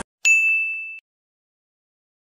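A single bright ding sound effect: a sharp strike with one clear high tone that rings for about three quarters of a second and then cuts off abruptly.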